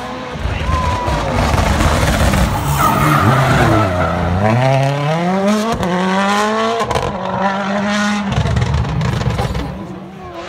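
Toyota Yaris WRC rally car's turbocharged 1.6-litre four-cylinder engine passing close by. The revs sink to a low point about four seconds in as it slows for the bend, then climb steadily as it accelerates away, with gear changes stepping the pitch near seven and eight seconds.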